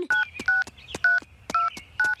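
Cell phone keypad tones as a number is dialed on a flip phone: four short two-note beeps about half a second apart, each with a faint key click, and a fifth starting at the very end.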